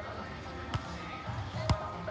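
Two sharp slaps of a beach volleyball being struck by hand or forearm: a fainter hit about three quarters of a second in, then a louder one near the end as the receiving player passes the ball. A murmur of voices runs underneath.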